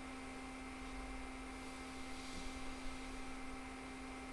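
Faint steady electrical hum with a few constant tones over a low hiss: the background noise of the recording between spoken lines.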